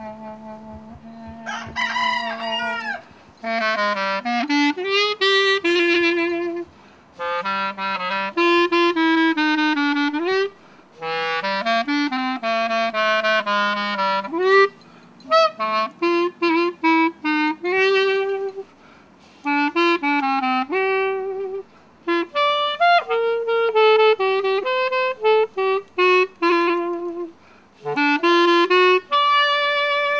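Solo clarinet played outdoors, a jazz-standard style melody in phrases separated by short breaks, with bends between notes. About two seconds in there is a swooping glide.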